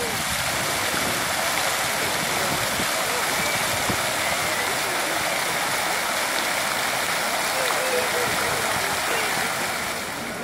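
Fountain jets splashing down into a pool: a steady, even rush of falling water, with faint voices of people nearby.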